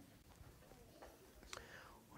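Near silence: room tone with a faint short click about one and a half seconds in.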